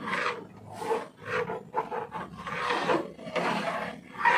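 A utensil scraping and stirring through thick maja blanca pudding in a metal pot, in repeated strokes about two a second. The cornstarch mixture is starting to thicken as it cooks.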